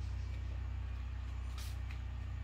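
A steady low mechanical hum with a fast, even flutter, like a fan or motor running, with a brief rustle about one and a half seconds in.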